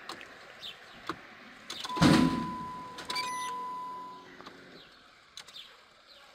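A Jeep Commander SUV's engine is started from inside the cabin, after a few light clicks. About two seconds in it catches with a sudden loud burst, then settles and fades over the next two seconds, with a steady high tone running alongside.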